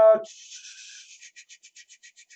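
A faint scratchy rubbing sound, steady at first, then in quick strokes about nine a second, after the tail end of a spoken 'uh'.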